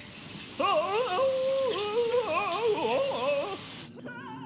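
Shower running, a steady hiss of spraying water that cuts off just before the end, with a voice singing a wavering tune over it.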